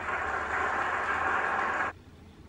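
A steady rushing noise from the played TV episode's soundtrack, which cuts off suddenly near the end.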